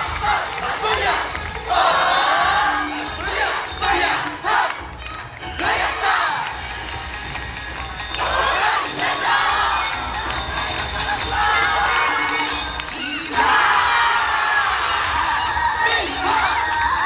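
A YOSAKOI dance team shouting calls together in repeated bursts, over the bass of their dance music.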